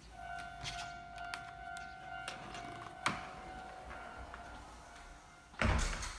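A steady, high, whistle-like tone holds for about five seconds, with scattered clicks and a sharp knock about three seconds in. A loud thump comes near the end.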